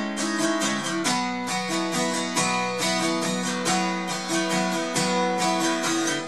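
Acoustic guitar strummed in a steady rhythm, its chords ringing on between strokes.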